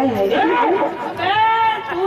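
Speech only: a high-pitched voice talking into a microphone over a stage loudspeaker.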